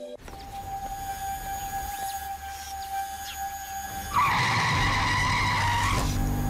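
A faint steady high tone, then about four seconds in a loud car tyre squeal, a wavering screech that carries on.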